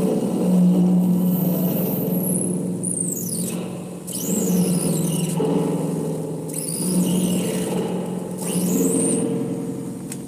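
Circuit-bent electronic noise played through a spring reverb tank: a steady low drone with held tones, and high whistling glides that swoop down and back up about every two seconds.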